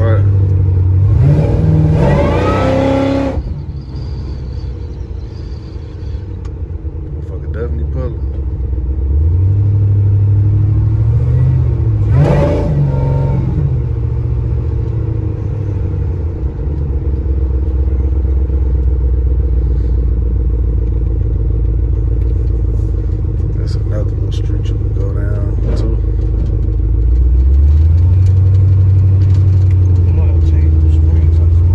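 Supercharged Chevy C10 pickup's engine heard from inside the cab while driving: the revs drop a few seconds in, climb again about ten seconds in, settle to a steady cruise, and rise once more near the end.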